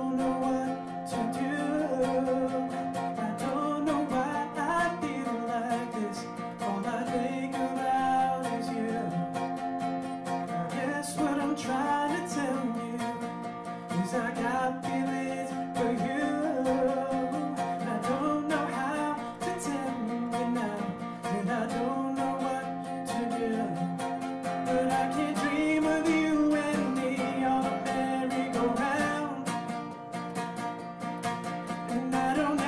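A man singing to his own strummed acoustic guitar, voice and guitar picked up by a microphone.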